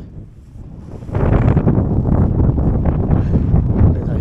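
Strong wind blowing across the microphone: a low, buffeting rush that is weaker at first, swells sharply about a second in, and stays loud.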